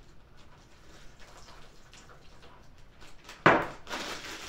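Quiet handling of a plastic bag and a cup while hot water is poured into crushed crackers and noodles, with faint small rustles and ticks. About three and a half seconds in there is one loud, sharp noise that fades quickly.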